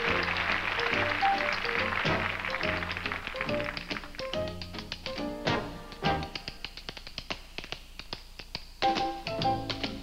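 Tap shoes striking a hard stage floor in quick rhythmic patterns over a live dance-band accompaniment. About four seconds in the band thins out and the taps stand out more clearly, with one loud tap near the end.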